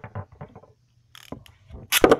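A Beyblade top and launcher being handled and readied for a launch: a run of sharp plastic clicks and rattles, with a short burst about a second in and louder clatter near the end.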